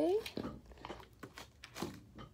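Craft supplies being moved around on a tabletop: a few light knocks and clicks with crinkling rustles as items are pushed aside and set down.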